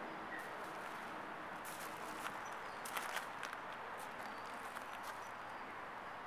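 Pea gravel crunching underfoot as a small dog shifts about on it: a scatter of short crunches in the middle few seconds over a steady background hiss.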